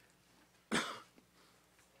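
A single short, sharp cough from a man, a little under a second in.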